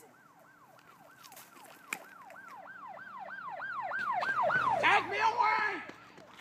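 Siren in a fast yelp, about three rising-and-falling sweeps a second, getting steadily louder over the first four and a half seconds; near the end lower sweeps join in.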